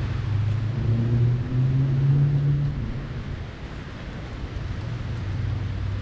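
A motor vehicle's engine running close by as a low hum. Its pitch steps up about one and a half seconds in, and it fades after about three seconds, over a steady outdoor street noise.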